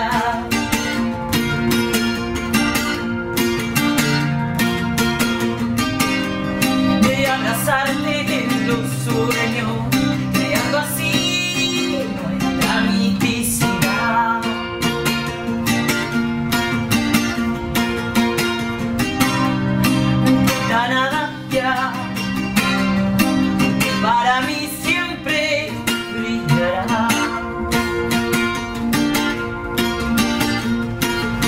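An acoustic guitar strummed and picked in a steady song accompaniment, with a woman's voice singing over it at times.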